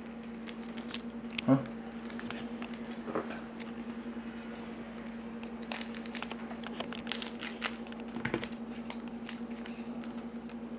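Scissors snipping open the foil wrapper of a trading-card pack held in a gloved hand, with crinkling of the foil: scattered short snips and crackles, busiest a little past the middle. A faint steady hum runs underneath.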